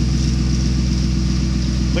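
A 1988 Chevrolet Caprice Classic's engine idling steadily, heard from the rear through an exhaust that has no catalytic converters.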